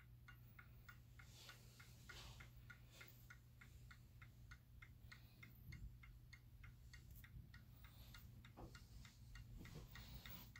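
Seth Thomas Fieldston mantel clock's movement ticking, faint and even at about four ticks a second.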